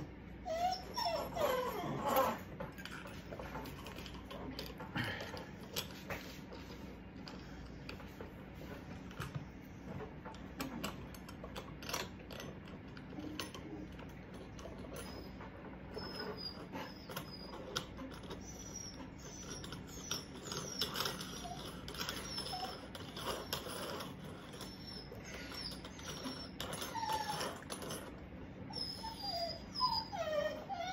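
An animal's calls, wavering up and down in pitch, about a second in and again near the end, with short high chirps in between. Small clicks and taps of metal faucet parts being handled run throughout.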